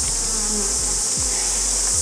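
Honey bees buzzing around an open hive, a steady hum, over a constant high-pitched hiss.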